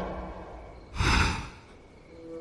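A person's single sharp, breathy breath lasting about half a second, about a second in.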